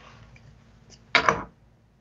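A few faint clicks from a small plastic sound-chamber device being handled, over a faint steady low hum. A short spoken word cuts in just after a second.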